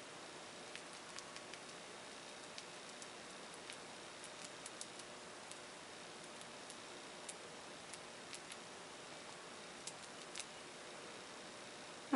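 Quiet room hiss with faint, irregular light ticks as a scruffy paintbrush dabs paint onto a glass.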